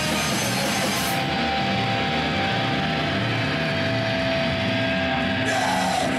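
Extreme metal band playing live with distorted electric guitars and drums. About a second in the cymbals drop out, leaving the guitars ringing on long held notes, and the full band comes back in near the end.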